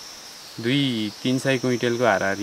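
A man talking, starting about half a second in, over a steady high-pitched drone of insects.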